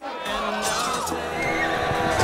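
A horse whinnying over a sustained orchestral score.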